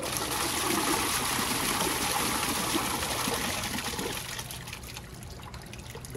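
Half of a cut-away toilet, its open side sealed with plexiglass, flushing: water rushes from the tank into the bowl, strongest for about four seconds, then dies away. The flow hits the plexiglass instead of swirling, and the bowl does not flush away.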